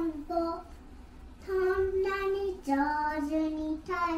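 A child singing: a short phrase, a pause of about a second, then long held notes, the later ones lower in pitch.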